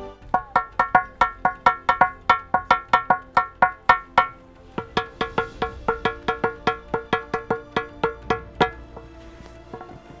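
Gaval daşı, a ringing rock slab, struck rapidly with a small hand stone, giving sharp ringing knocks about four a second. After a short break near the middle comes a second, softer run of strikes with a lower ring.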